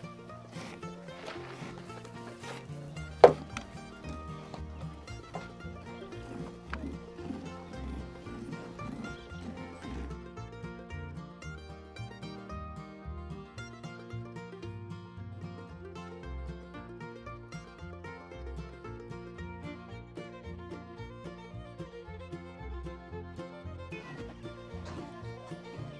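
Instrumental background music, with one sharp knock about three seconds in.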